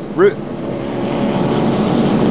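A pack of NASCAR Craftsman Truck Series race trucks' V8 engines running at racing speed as a steady drone that grows gradually louder, heard through a TV broadcast.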